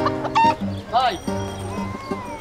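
A chicken squawking in two short calls, about half a second and one second in, over background music with sustained notes.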